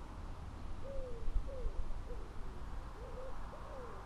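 A bird's short hooting calls, each note rising then falling in pitch, repeated about twice a second from about a second in, over a low rumble of wind on the microphone.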